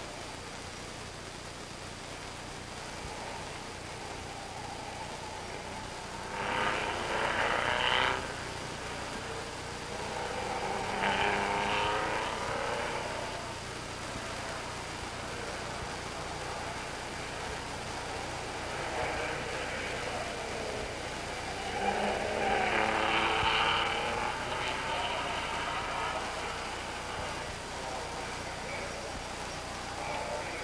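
Racing car engines passing at speed on an old film soundtrack, three louder passes that swell and fall away, over a steady hiss and hum.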